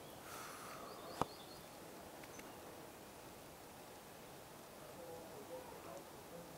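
Faint outdoor ambience with a few faint high ticks and one sharp click a little over a second in.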